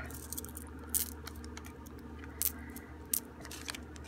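Small loose beads clicking against each other and against the tabletop as they are handled in a palm: a few sharp clicks, about one, two and a half and three seconds in, with lighter ticks between, over a low steady hum.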